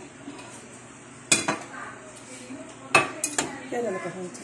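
Metal spoon clinking against a glass dish: one sharp ringing clink about a second in, then a cluster of three quick clinks near the three-second mark.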